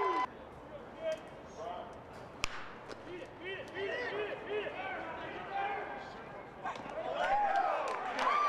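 Scattered shouting voices from a baseball crowd, with one sharp crack of a bat hitting the ball about two and a half seconds in. The crowd noise grows louder near the end.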